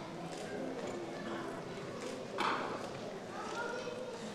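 Faint voices murmuring, with one short, louder vocal sound about two and a half seconds in.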